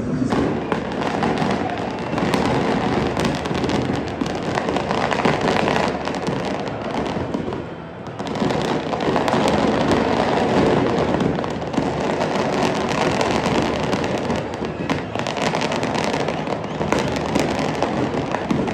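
A long, dense run of firecrackers crackling rapidly. There is a brief dip in the noise about eight seconds in.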